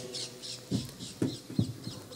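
Small birds chirping in a quick, even series of short high chirps, about four a second, with a few soft low knocks in the middle.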